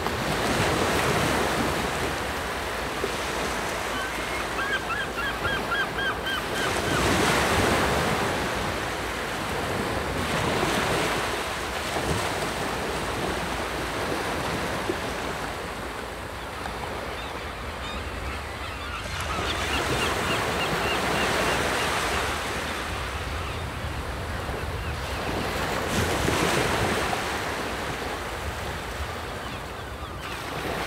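Sea surf: a steady wash of waves that swells and eases every few seconds. A faint, rapid series of high chirps comes twice, about four seconds in and again around twenty seconds.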